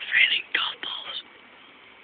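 A person whispering close to the phone's microphone, a few breathy phrases that stop a little over a second in.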